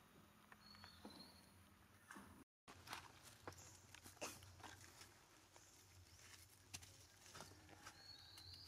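Faint crinkling and rustling of a plastic bag and dry leaves as macaques handle it and pull rice from it, a scatter of small sharp clicks. The sound drops out briefly about two and a half seconds in.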